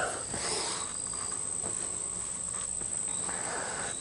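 Quiet summer outdoor background with a steady high-pitched insect chorus, and faint rustling of cotton cloth being handled.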